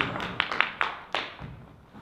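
Hands clapping in quick, even beats, about five a second, fading out a little past a second in. A low thud follows as a chair is set down on the wooden stage.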